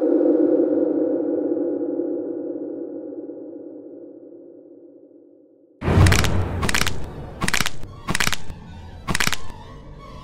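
Intro sound design: a sustained low drone that fades away over about six seconds, then a sudden loud hit with a deep rumble under it and about five short bursts of harsh, crackling noise, each a fraction of a second long.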